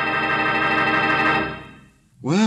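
A held organ chord, a music bridge between scenes of a radio drama, sustained on one chord and fading out near the end.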